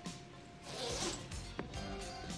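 Quiet background music with a brief rustling swish about a second in, then a sharp click.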